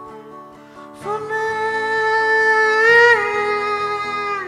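A man singing over a strummed acoustic guitar: after a second of guitar alone, his voice comes in on one long held note that drops in pitch near three seconds in.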